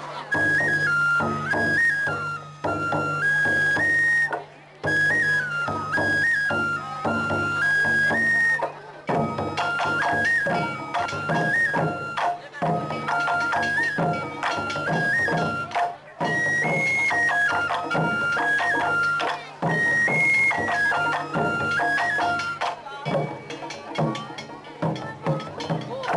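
Taiko drum ensemble playing, with a high shinobue (Japanese bamboo flute) carrying a stepping melody in repeated short phrases over the drums. In the last few seconds the flute drops out and the drums play on alone.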